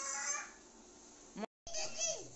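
A bird calling twice in short calls, the second falling in pitch.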